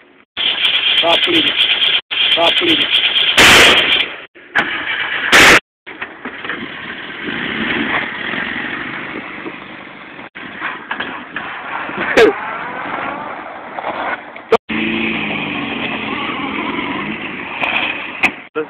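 Car engine revving hard and running under load, its pitch rising and falling. There are two loud short blasts of microphone buffeting about three and a half and five and a half seconds in.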